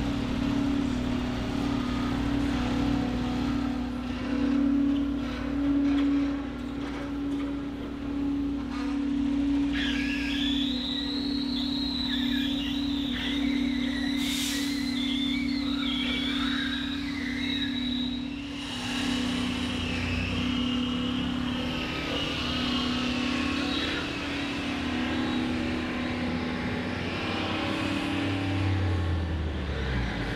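Diesel engine of a tracked excavator running steadily, with a high, wavering squeal that comes in about a third of the way through and fades out near the end.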